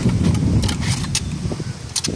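Metal parts of a come-along hoist rig clicking and clinking as it is dismantled by hand: a few sharp clicks over a steady low rumble.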